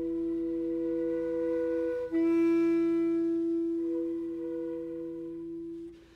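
Contemporary chamber music of long held woodwind tones with a clarinet-like sound over a steady low drone. A louder sustained note enters about two seconds in, and the sound fades away near the end.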